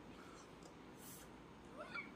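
Near silence with faint room hiss, broken near the end by a short, faint vocal cry that rises in pitch.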